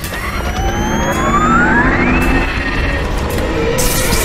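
Film sound effects: a whine that rises steadily for about two seconds and then holds, over a low rumble and background music. Near the end a burst of hiss sets in as electric arcs appear.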